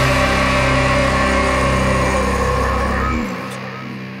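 Death metal band's final distorted guitar and bass chord held and ringing out after the drums stop. The lowest notes cut off a little after three seconds in and the remaining chord fades.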